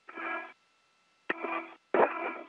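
Three short bursts of steady, buzzy tones on the spacewalk radio loop, each opening with a click, the last two close together; a faint steady tone hums underneath.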